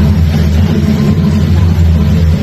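Loud, steady low rumble.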